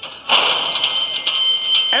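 Racetrack starting-gate bell ringing loudly as the gate springs open at the start of a horse race. It begins suddenly with a crash about a third of a second in and rings steadily on.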